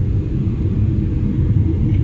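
Steady low rumble of an airliner's engines and rushing air heard from inside the passenger cabin, with a faint steady hum over it.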